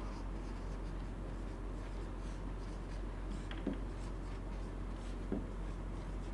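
Marker pen writing on a whiteboard, faint scratching strokes with a couple of small ticks as the tip is lifted and set down, over a steady low electrical hum.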